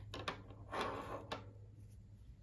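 Soft handling noise of a crocheted cotton dishtowel being buttoned by hand: a brief fabric rustle and a few light clicks in the first second and a half, then only faint room hum.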